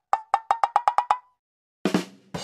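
An edited-in sound effect of sharp, wood-block-like knocks, each with a short ringing tone. About eight of them come quicker and quicker and stop a little over a second in. A loud new sound starts just before the end.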